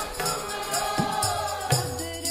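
Sikh kirtan: women's voices singing a shabad together to harmonium accompaniment, with tabla strokes and the bass drum's pitch gliding on its strokes.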